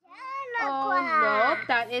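A young child's long, wordless vocalising, nearly two seconds of voice with the pitch sliding up and down, breaking off just before two seconds.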